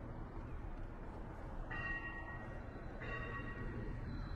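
A bell rings twice, a little over a second apart, each strike dying away, over a steady low city-street rumble.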